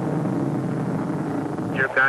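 Saturn IB rocket's first-stage engines running during ascent: a steady, deep noise with no distinct tones. It gives way near the end to a voice over the radio loop.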